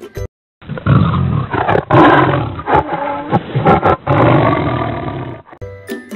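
Tiger roar sound effect: several deep roars and growls over about five seconds, starting after a brief silence and dying away shortly before the end.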